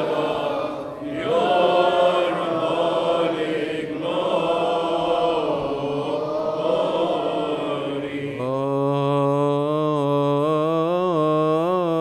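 Congregation and deacons chanting a liturgical response together in unison. About eight seconds in, a single voice takes over and holds a long, steady note, with small melodic turns near the end.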